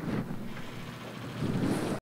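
Indistinct low background noise of a room, uneven in level, swelling again near the end.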